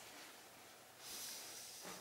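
Near silence, then a faint breathy hiss starting about a second in.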